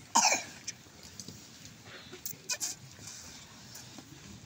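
A single short, sharp cough from someone in the crowd just after the start, followed by a few faint clicks over a hushed background.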